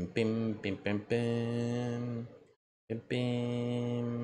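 A man humming a wordless tune to himself: a few short syllables, then two long held notes with a short pause between them.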